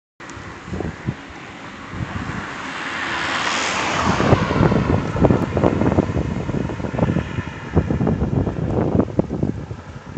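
A car passes close by and drives off down the road: its tyre and engine noise swells to a peak about three to four seconds in, then fades away. Gusts of wind buffet the microphone through the second half.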